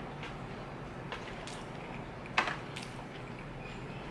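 Quiet eating sounds: a person chewing, with a few soft clicks from the mouth and the wooden chopsticks, the sharpest about two and a half seconds in, over a faint steady hiss.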